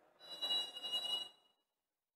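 Referee's whistle blown in one steady blast of about a second and a half, signalling that the penalty kick may be taken, over a low crowd murmur.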